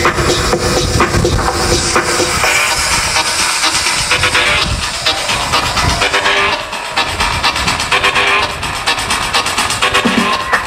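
Electronic dance music played loud through a club sound system during a live DJ set, with a steady beat; the bass drops out for a moment just past the middle.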